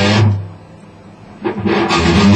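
PRS electric guitar playing an E-minor practice piece. The notes fade out in the first half second, leaving a short lull, and the playing starts again about a second and a half in.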